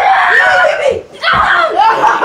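Boys shouting and screaming loudly in rough play, in two outbursts with a short break about a second in.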